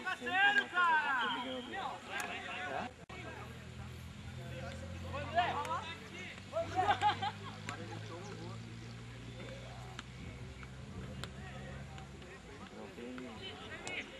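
Voices shouting and calling across an open football pitch, loudest in the first second or two and again midway. A low steady hum runs underneath from about four seconds in until near the end.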